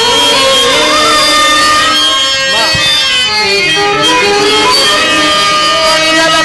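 Live drama-troupe accompaniment music: harmonium and violin playing a melody with gliding, wavering notes over held tones.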